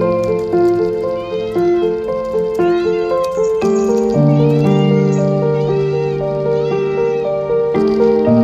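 Domestic cat meowing repeatedly, a series of short rising-and-falling meows, over steady background music.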